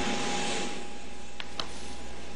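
Jet engines of a French government business jet running as it taxis on the apron: a steady rushing noise with a thin steady whine.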